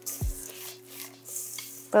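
Background music with held low notes and a deep kick drum that sounds once, under faint scratchy scraping of a spoon stirring buttered cookie crumbs in a stainless steel bowl.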